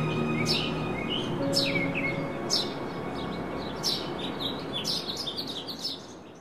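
Small birds chirping: quick high calls that sweep downward, about one a second at first and coming faster near the end, over soft background music.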